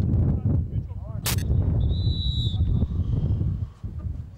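Referee's whistle, one short high blast about two seconds in, after a single sharp knock about a second in, over a steady low rumble and a few shouts.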